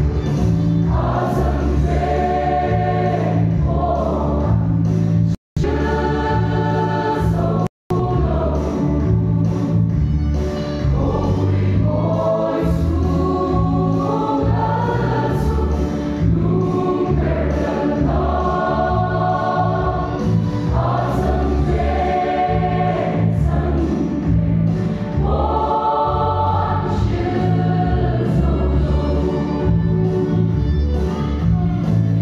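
A large mixed church choir singing a hymn in Mizo in several-part harmony, with long held notes. The sound cuts out completely for an instant twice, about five and eight seconds in.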